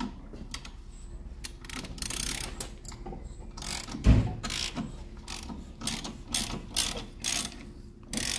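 Hand ratchet wrench being worked in short strokes, its pawl clicking about three times a second. There is one dull thump about four seconds in.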